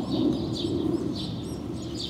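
Small birds chirping in quick, repeated short notes over a low, steady rumble.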